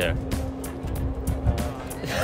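Background music with a steady held low note, over a low outdoor rumble.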